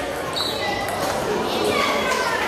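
Plastic table tennis ball clicking off bats and the table in a rally, over the chatter of a crowd of children and adults in a large, echoing hall.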